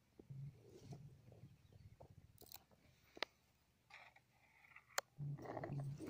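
An armadillo chewing and crunching on cassava root down in its hole: faint, irregular crunches and clicks, with a sharper click about three seconds in and another about five seconds in.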